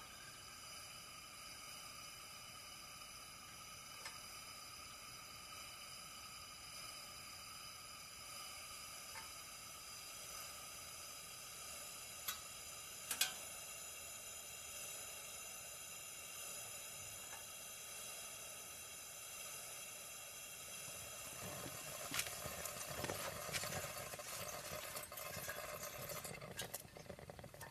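Camping lantern burning with a steady faint hiss, two sharp ticks about a second apart around the middle, and a rougher crackle in the last few seconds.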